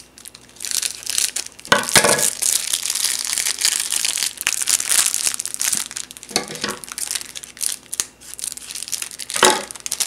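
Plastic and foil candy-kit packaging crinkling and crackling as it is handled, continuous with a few louder crunches along the way.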